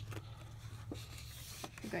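Hands handling a large paper rule book held open, giving a few light taps and rustles of paper, over a steady low hum.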